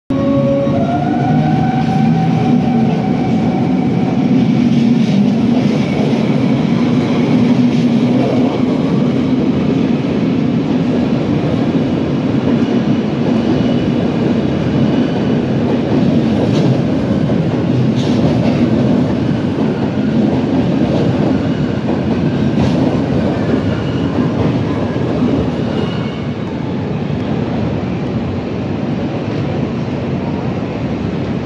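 Rhaetian Railway train running past close along the platform: a continuous loud rumble of wheels on track, with a rising whine in the first couple of seconds and a few clicks of wheels over rail joints. It eases off slightly near the end.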